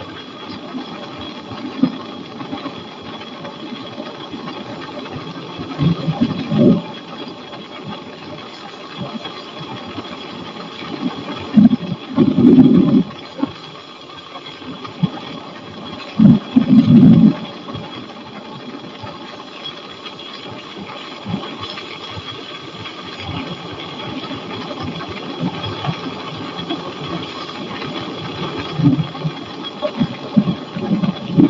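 Flexwing microlight trike's engine and pusher propeller droning steadily in cruise flight, with a constant high whine. Short, loud low rumbles of wind on the microphone break in about six, twelve and sixteen seconds in.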